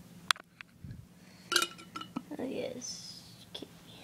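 A sharp click, then glass jars knocking together about a second and a half in, with a short ringing clink, among handling noise.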